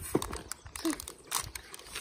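A small plastic-foil blind packet crinkling and tearing as it is pulled open by hand, in a few separate sharp crackles.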